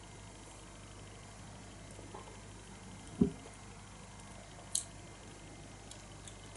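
A man drinking beer from a glass: one low gulp about three seconds in, then a brief sharp click nearly two seconds later, over quiet room tone.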